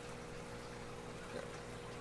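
Aquarium filtration running: a steady pump hum with water flowing and trickling.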